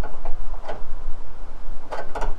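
A few sharp metallic clicks and knocks as a hand tool works the split steel at the bottom of a van's rear door, bending it inwards. One click comes about two-thirds of a second in and another near the end, over a steady low rumble.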